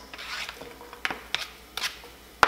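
Chopped red onion scraped off a plastic cutting board with a wooden spoon into a frying pan: soft scraping with a few light clicks about a second in and near the end.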